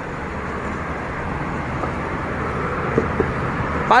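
Steady outdoor background noise, a low rumble with a rushing hiss, getting slightly louder over the seconds, with a couple of faint knocks about three seconds in.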